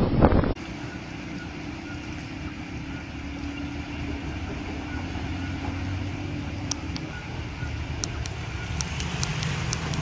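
Loud wind-buffeted noise cuts off about half a second in. It gives way to a truck's diesel engine running steadily under a wash of water as the truck drives through deep floodwater. Sharp clicks come now and then in the last few seconds.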